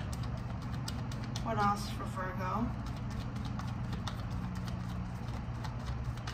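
A deck of tarot cards being shuffled and handled, giving a run of quick light clicks and snaps over a steady low hum. A brief murmured voice comes in about a second and a half in.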